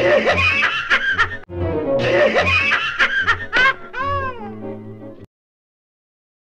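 Cartoon cat laughing in repeated snickering, giggling bursts over a music score, ending in a few rising-and-falling cries. The sound cuts off suddenly about five seconds in.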